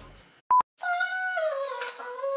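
A brief, loud electronic beep about half a second in, then a woman's voice holding a long sung note that drops lower partway through.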